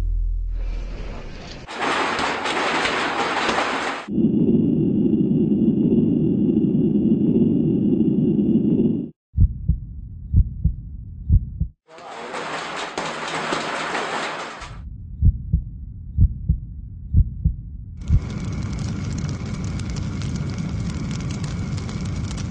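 Sound-design intro to a music video: bursts of hissing noise, a low drone with a faint high tone, and runs of short, deep thumps at uneven spacing between them.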